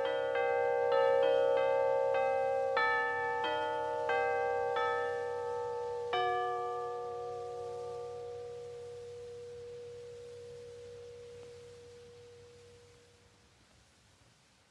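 Bells struck in a quick irregular run, about two strikes a second, then one last strike about six seconds in that rings on and slowly fades away.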